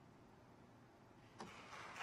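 Near silence in the church after the organ's last chord has died away, then audience applause starting about a second and a half in with a first sharp clap and growing.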